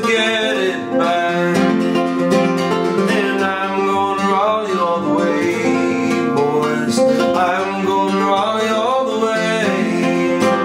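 Nylon-string acoustic guitar fingerpicked in a folk-blues song, a continuous run of plucked notes and chords.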